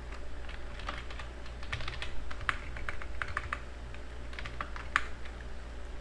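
Typing on a computer keyboard: irregular keystrokes in short runs, with a few sharper, louder key presses.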